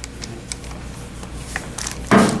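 A few faint plastic clicks and rubbing as a cooling-system pressure tester is twisted by hand onto the radiator filler-neck adapter, over a steady low hum.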